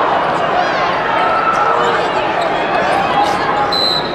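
Basketball game sound in an arena: a ball bouncing and sneakers squeaking on the hardwood over crowd chatter and voices, with a brief high whistle near the end.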